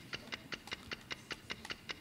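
Fast, even ticking of a quiz countdown-clock sound effect, several ticks a second, running while the contestant thinks over an answer.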